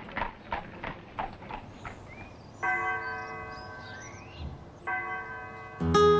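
Hoofbeats of a horse clip-clopping for about the first two seconds, then a church bell tolling twice, about two seconds apart, each stroke ringing on.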